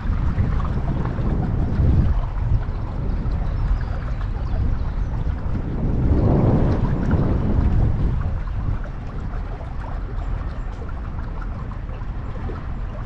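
Wind buffeting the microphone, a low, rushing rumble that swells in gusts about two seconds in and again from about six to eight seconds, then eases near the end.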